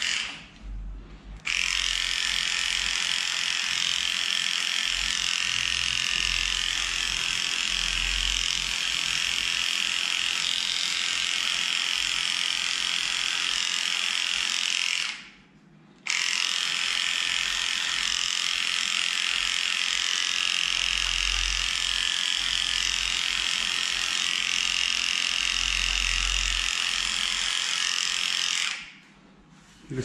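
Electric dog grooming clippers running steadily with a high-pitched buzz as they shave through a cocker spaniel's badly matted coat. They stop for about a second midway, then run again until near the end.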